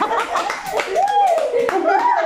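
Several people clapping their hands, with excited voices and laughter; the claps are thickest at the start, and high voices carry on after about a second.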